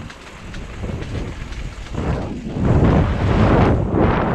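Wind buffeting an action camera's microphone, mixed with mountain bike tyres rolling over a dirt trail. It grows louder about two seconds in.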